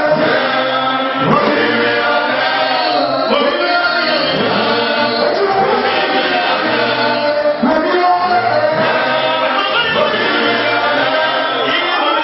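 A choir singing together through microphones, with several voices holding and sliding between notes without a break.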